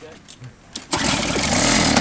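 A Toro single-stage snow blower's small engine is pull-started and runs loudly for about a second from about a second in. The engine keeps stalling and will not stay running.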